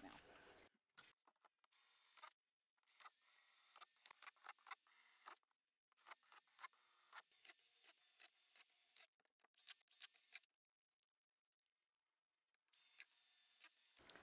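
Cordless drill boring holes in the rim of a thin plastic storage box: very faint, in several short spurts of a steady high whine with small clicks, broken by dead silence.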